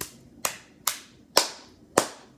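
Bare hands clapping five times, about two claps a second, the later claps louder; the palms are coated in sticky slime.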